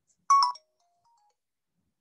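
A short electronic chime about a third of a second in, a few steady tones sounding together for about a quarter of a second, followed by faint brief tones.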